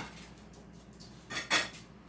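Plate and cutlery being handled while eating: a faint click at the start, then two sharp clinks about a second and a half in.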